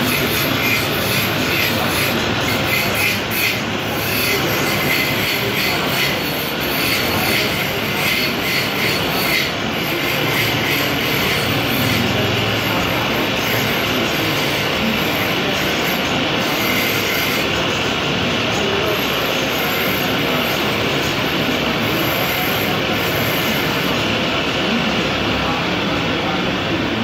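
Motor-driven wood lathe running while a hand-held turning chisel cuts into spinning timber: a steady scraping, rasping cut over the machine's running noise. The cutting is harshest in roughly the first ten seconds.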